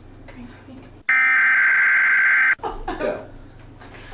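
A censor bleep: one steady electronic tone about a second and a half long, cutting in and out abruptly, between stretches of soft speech.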